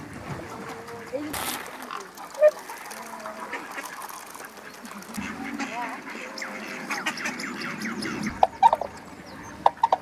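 Waterfowl calling: ducks quacking and geese honking, with a cluster of short loud calls near the end.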